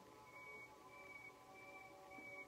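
Faint Native American flute music in the background: a held steady tone under short high notes that repeat about every half second.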